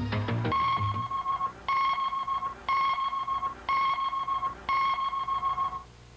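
Five electronic countdown beeps, one a second, each a steady mid-pitched tone just under a second long, the last a little longer: a broadcast 'top' time-signal countdown to the moment the station's satellite link starts.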